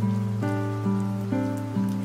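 Soft fingerpicked guitar music: single plucked notes ring and fade, a new one about every half second.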